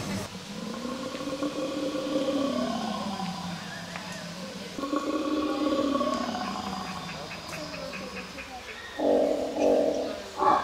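Recorded dinosaur calls played from a dinosaur park's loudspeakers: two long, low calls, each sliding up and then down in pitch over about four seconds, then two short rough calls near the end.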